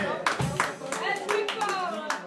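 Audience clapping and scattered voices as a live band's last chord dies away, the applause thinning and growing quieter.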